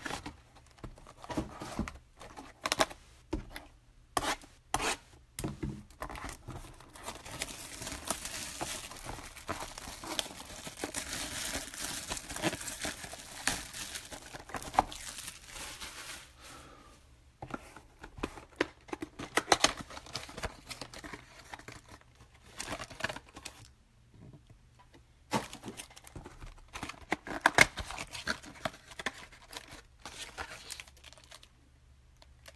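Packaging on 2017 Topps Finest trading card boxes being torn open and crinkled by hand: about ten seconds of continuous crackling tearing in the middle, with sharp taps and knocks of the cardboard boxes being handled before and after.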